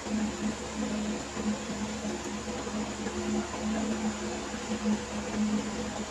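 Faint steady electric hum under quiet room noise, without distinct knocks or clicks.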